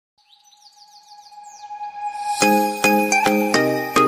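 Background music fading in: bird chirps over a held tone, then struck chords come in about two and a half seconds in, about two a second.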